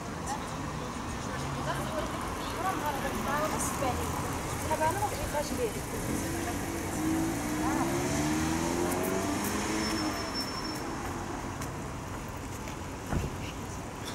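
Town-centre street ambience: car traffic and passers-by talking. About halfway through, a vehicle pulls away with its engine note rising.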